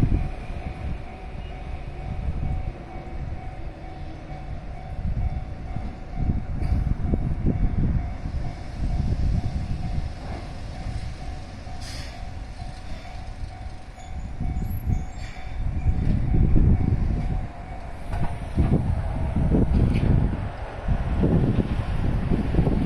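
Japanese level-crossing warning bell ringing steadily while a Keihan 700-series train approaches, with gusty wind buffeting the microphone.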